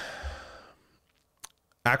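A man's breathy exhale trailing off in a pause in his talk, then a single small mouth click, with his speech starting again near the end.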